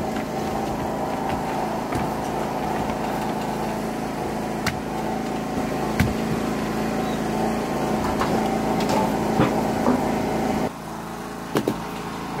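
A steady mechanical hum, like a motor or small engine running, with a few sharp clicks over it. The hum drops away suddenly near the end.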